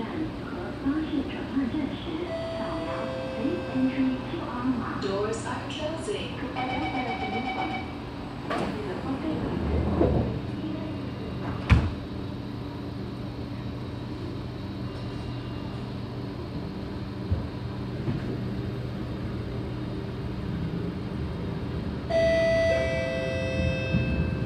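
A train's door-closing chime and warning beeps, the sliding doors shutting with a sharp knock, then a steady hum as the train gets under way. Near the end comes a two-note ding-dong, the chime that comes before an on-board announcement.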